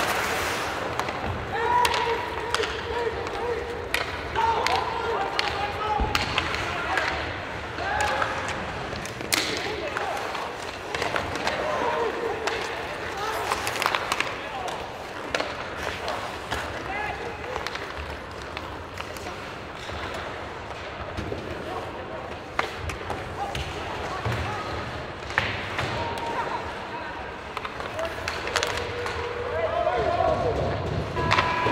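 Ice hockey play heard from rinkside: sharp clacks of sticks striking the puck and each other, and knocks against the boards, with players shouting calls across the ice.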